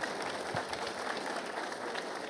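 Audience of a few hundred people applauding steadily.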